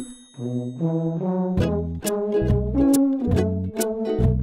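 Tuba music: after a brief break at the very start, a low tuba line steps upward under brass chords. A steady percussion beat comes back in about one and a half seconds in.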